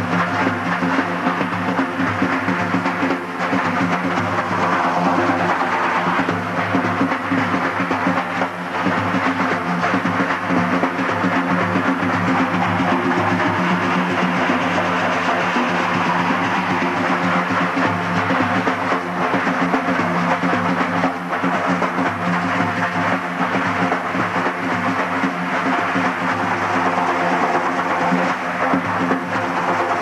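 Kurdish daf frame drums played in a fast, continuous roll, together with a long-necked tanbur lute; the playing is dense and even, without a break.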